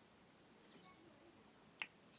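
Near silence, broken near the end by one short, sharp click as a glass Coca-Cola bottle comes away from the drinker's lips.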